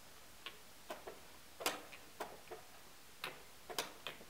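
Wooden chess pieces set down on a wooden board and digital chess clock buttons pressed in quick blitz play: about nine sharp, irregularly spaced clicks and knocks, the loudest a little past a second and a half in.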